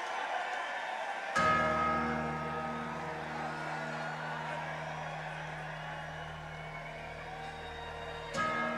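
Live rock band: over crowd noise, an electric guitar and bass chord is struck about a second and a half in and left to ring, fading slowly.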